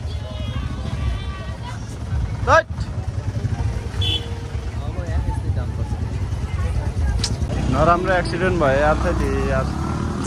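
Low, steady rumble of an idling motorcycle engine close by.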